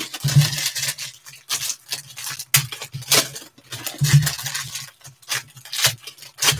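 Foil trading-card pack wrappers crinkling and tearing as the packs are ripped open by hand, in irregular bursts of crackle.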